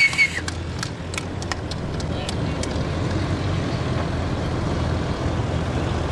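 Small propeller aircraft engines running at taxi, a steady low drone that slowly grows louder. A few scattered handclaps in the first few seconds.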